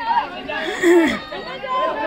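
Many voices talking and calling out over one another: crowd chatter.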